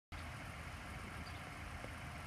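Steady low rumble of an idling vehicle engine.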